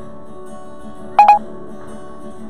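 Acoustic guitar playing softly, cut across about a second in by two short, loud electronic beeps from the recording device as it is handled.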